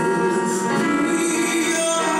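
Live band music with a male vocalist singing into a handheld microphone, the notes long and held.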